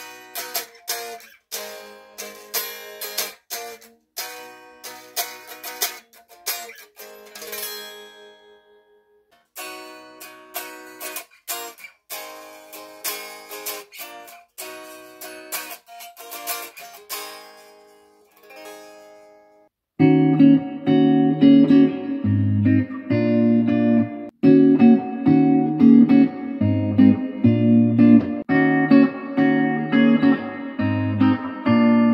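Solid-body electric guitars played unamplified, giving thin, bright plucked notes and chords: a 1998 Korean-made Epiphone Les Paul Studio, then a new Chinese-made one. About twenty seconds in, the sound switches to the new Les Paul Studio played through an amplifier on its bridge humbucker, much louder and fuller.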